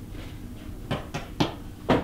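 Four short, sharp knocks or clicks, starting about a second in, the last and loudest near the end, heard in a small wood-panelled room.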